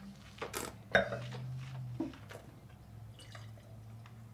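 Wet mouth sounds of wine being tasted: a few small slurps and swishes as the sip is worked around the mouth, then faint spitting into a small tasting cup near the end.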